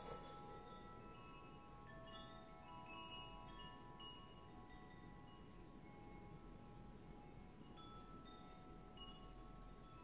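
Faint, gentle background music of soft chime-like notes at different pitches, each ringing on for a second or two and overlapping.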